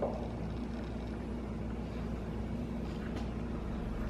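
Steady low hum of a quiet room while a table knife slowly cuts through a chocolate, caramel and pecan candy egg on a paper plate, with a faint click about three seconds in.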